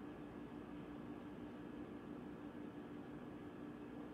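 Upright vacuum cleaner running with a steady hum, heard faintly through a tablet's speaker.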